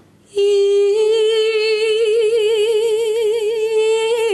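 A woman's solo voice holding one long sung note, unaccompanied. It enters about a third of a second in, steady at first, then with a vibrato that grows wider.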